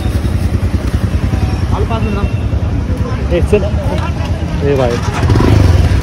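Royal Enfield Himalayan's single-cylinder engine running at idle with a fast, steady low pulse, getting louder for a moment near the end.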